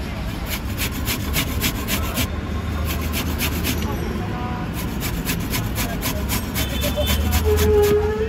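Carrot being grated on a handheld stainless-steel box grater, repeated rasping strokes at about three a second.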